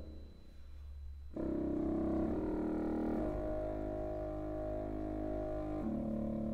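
Concert wind ensemble playing slow, held chords: a soft low note, then about a second and a half in a fuller chord enters and is sustained, moving to a new chord near the end, with French horns among the players sounding.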